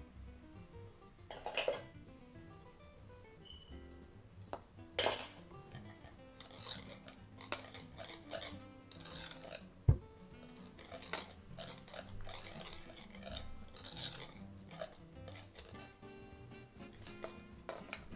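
Metal wire whisk beating pancake batter in a bowl: a long run of quick scraping, clinking strokes against the bowl, with one sharp thump about ten seconds in. Music plays underneath.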